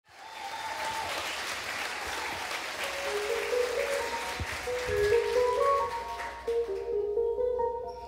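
Audience applause that fades in at the start and dies away about six to seven seconds in, while soft, held instrumental notes begin about three seconds in.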